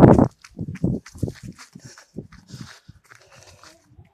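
A goat jumping and scuffling about on grass right by the microphone: a string of short, irregular rustles and knocks.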